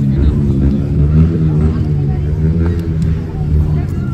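Wind rumbling on the phone's microphone, a strong low rumble throughout, with a low voice faintly underneath.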